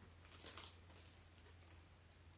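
Faint crinkling of plastic packaging being handled, a few soft rustles about half a second in, over near-silent room tone.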